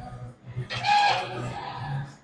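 A person laughing briefly, starting a little under a second in, over a steady low hum.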